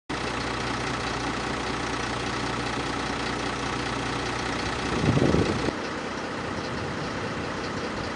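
Vehicle engine idling steadily, with a short louder rumble about five seconds in. The sound then changes abruptly to a quieter steady outdoor noise without the engine hum.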